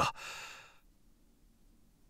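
A short, soft breath out from the narrator that fades away within the first second, followed by near silence.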